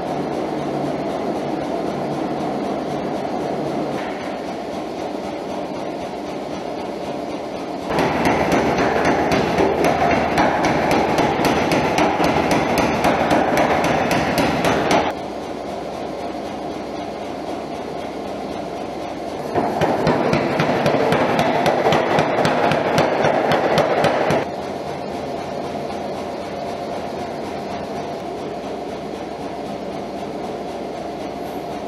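A blacksmith's forge fire running with a steady rushing noise. Two louder stretches of fast, dense clatter come in suddenly, one about eight seconds in and one about twenty seconds in, each lasting five to seven seconds.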